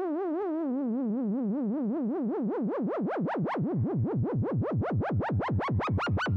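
Electronic dance music build-up with no beat: a lone synth tone wobbling up and down in pitch, the wobble growing faster and sweeping ever wider.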